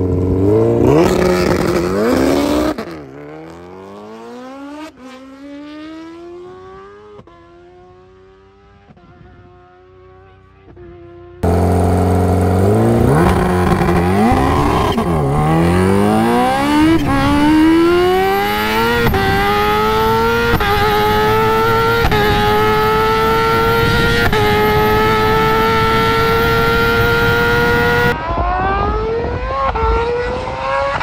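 Kawasaki Ninja H2's inline-four engine on a drag run: revving hard off the line and rising in pitch through the gears as it pulls away and fades. About eleven seconds in it is suddenly loud again, heard from on the bike with wind rush, climbing in pitch in steps with an upshift roughly every two seconds. Near the end it cuts off abruptly and a fainter engine rises in pitch.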